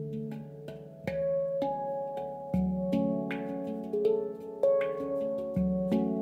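Ayasa handpan in F#3 Low Pygmy tuning played by hand: a melody of struck notes, each ringing on and overlapping the next. Deeper notes sound about a second in, midway and near the end.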